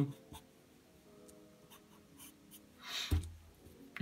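Black felt-tip marker drawing on paper: faint short scratches and taps of the nib. About three seconds in comes a louder, longer rustling swell with a low thump.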